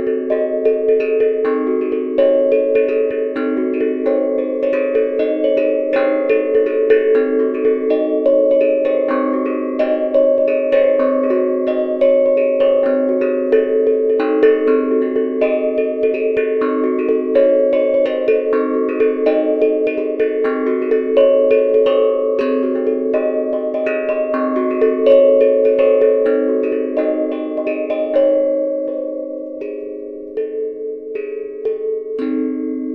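A homemade steel tongue drum (tank drum) being played: a continuous melodic run of struck notes in the middle register, each ringing on and overlapping the next. The playing thins out a little near the end.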